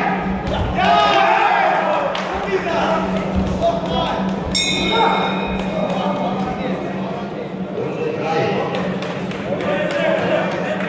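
Crowd and corner shouting during an amateur boxing bout in a large, echoing hall, with a short metallic ring about four and a half seconds in.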